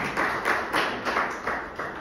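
Audience applauding, the clapping fading away toward the end.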